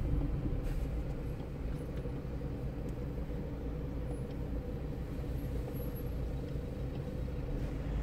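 Steady low rumble of a vehicle engine idling in slow, stop-and-go traffic, heard from inside the vehicle.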